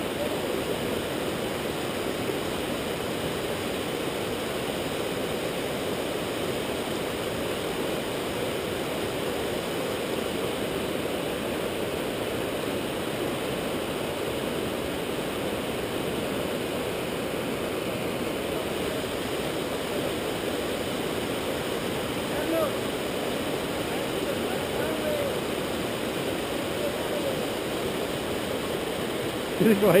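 River rapids: white water rushing steadily over rocks in a shallow river.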